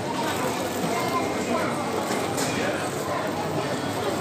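Indistinct background chatter and general noise of a busy fast-food restaurant dining room, with no voice clear enough to make out words.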